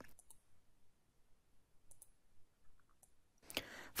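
A few faint computer mouse clicks, scattered over near silence, as windows are closed.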